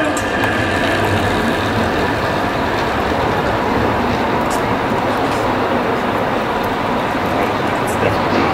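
Steady rushing noise with a low, uneven rumble underneath, with no distinct knocks or calls.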